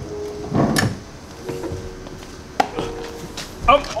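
A person climbing into the back seat of a car: a rustling bump of body and clothing against the seat and door frame just before a second in, and a sharp knock past the middle. A short spoken word near the end.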